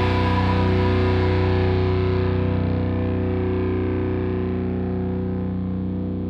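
Progressive metal music: a held, distorted electric guitar chord with effects sustains and slowly fades, its highs dying away.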